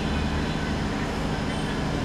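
Steady low rumble with an even hiss, with no distinct events.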